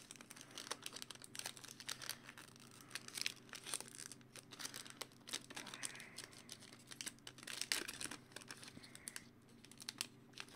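A foil trading-card pack wrapper crinkling and tearing as it is opened by hand, heard as faint scattered crackles.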